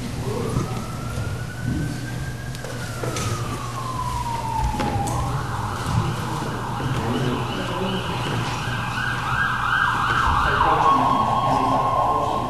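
Emergency vehicle siren. It starts as a slow wail that rises and then falls, switches to a fast warbling yelp about five seconds in, and settles into a steady held tone near the end.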